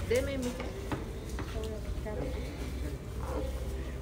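A mug pressing and mashing grilled tomatoes in a bowl, with a few light knocks against the bowl. Voices talk in the background over a steady low rumble.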